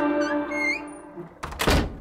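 Logo jingle: a held musical chord fading away with a few short rising chimes, then a single thump near the end.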